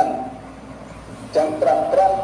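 A Buddhist monk's voice through a microphone, delivering his sermon in drawn-out, steady-pitched chanted notes: a short held note at the start, then after about a second and a half a long note held at one pitch.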